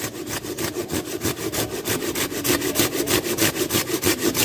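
Hand pruning saw cutting through a branch of a serut (Streblus asper) bonsai, with quick, even back-and-forth strokes, about four to five a second.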